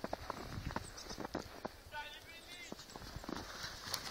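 Footsteps crunching in fresh snow, an irregular run of short crunches. About two seconds in, a brief high-pitched call with a bending pitch is heard over them.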